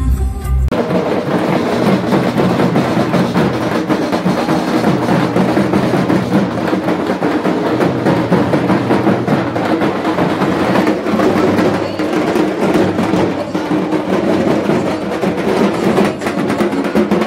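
Loud, dense drumming with rapid strokes from a group of drums. A bass-heavy music track with singing cuts off abruptly just under a second in.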